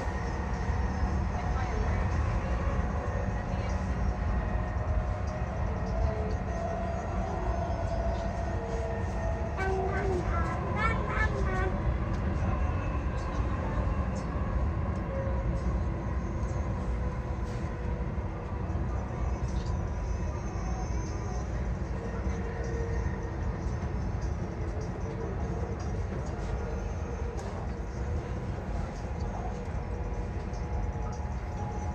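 Dubai Metro train running along an elevated track, heard from inside the carriage: a steady low rumble with a faint, even whine above it.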